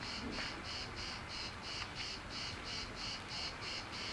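Insects chirping in an even, steady rhythm, about three high-pitched chirps a second, cricket-like, with a couple of faint clicks.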